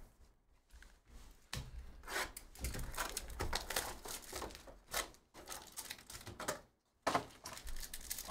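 Cardboard trading-card box being torn open and foil card packs handled: irregular tearing and crinkling, starting about a second and a half in, with a short pause near the end.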